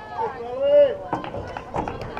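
A person's voice calling out at a softball game, one drawn-out shout that is loudest about three quarters of a second in. Two sharp knocks follow, about a second in and near the end.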